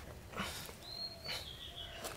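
A gloved hand scraping and brushing loose soil in short strokes. A thin, high call, falling a little in pitch, sounds for about a second from the middle.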